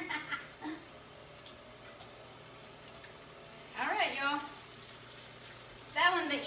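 Faint, steady sizzle of beef chimichangas pan-frying on a gas stove, with a short laugh at the start and a brief vocal sound about four seconds in.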